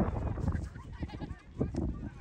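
High-pitched shouts and calls from soccer players across the field, over wind rumbling on the microphone.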